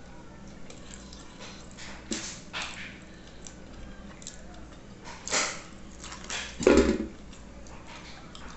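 Mouth sounds of eating a cow's foot bone by hand: a few short sucks and slurps at the gelatinous meat, with a louder, deeper one near the end.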